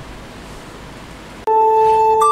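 Low hiss, then about one and a half seconds in a struck chime tone starts suddenly and rings on: the opening of a short electronic logo jingle.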